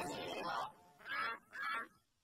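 Three short, effects-distorted voice-like cries from a processed logo soundtrack, separated by brief silences.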